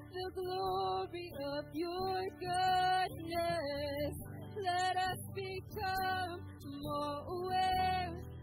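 Women's voices singing a slow congregational worship song in phrases with short breaths between them, over a live band of guitars and drums.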